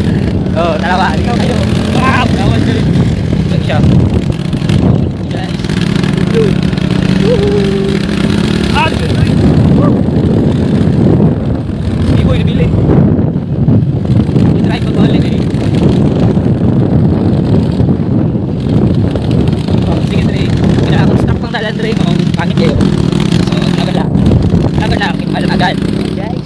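A motorcycle engine runs steadily at riding speed, a low hum under rough, gusty wind noise on the phone's microphone.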